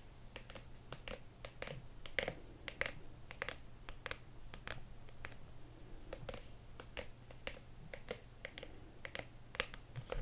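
Long fingernails tapping on a stiff black leather pouch: irregular sharp clicks, several a second.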